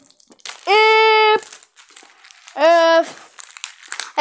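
A child humming two held notes, the first longer and higher than the second, with plastic packaging crinkling faintly between them.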